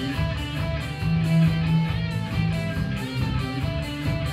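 Rock band playing live: electric guitar notes over a held bass line and drums, heard through the room from the audience.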